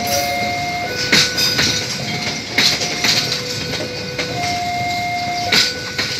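Argo Bromo Anggrek passenger coaches rolling past, their wheels clacking over rail joints every second or two. Thin steady squealing tones come and go, each held about a second.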